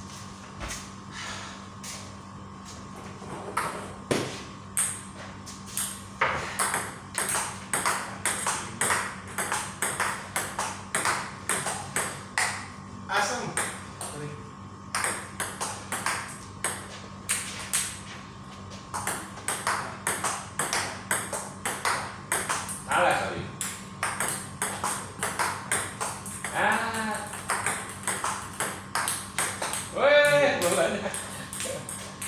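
Table tennis rally: a celluloid ball clicking back and forth off the paddles and the table, two to three hits a second, in rallies with brief breaks between points.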